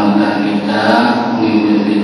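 A man's voice chanting Arabic text from a classical kitab in a drawn-out, melodic recitation style, heard through a microphone.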